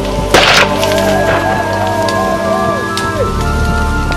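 A single loud rifle shot about a third of a second in, with a short rolling tail, heard over background music carrying a wavering melody.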